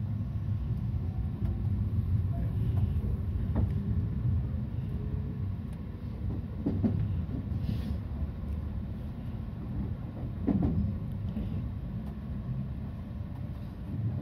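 Meitetsu electric train running, heard from inside the cab: a steady low rumble with a few scattered clicks from the wheels.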